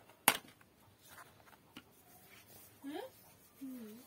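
A single sharp click about a third of a second in, followed by a couple of faint taps; near the end a voice asks "hı? hı?".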